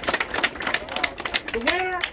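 Crowd of spectators clapping, a quick patter of many hand claps.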